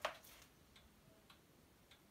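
Near silence with faint, regular ticking, a little under two ticks a second, after a short knock right at the start.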